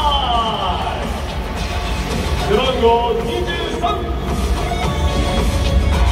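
A stadium PA announcer's long, drawn-out call of a player's name, falling in pitch and ending about a second in, over loud lineup-introduction music with heavy bass. A few short voice fragments come midway.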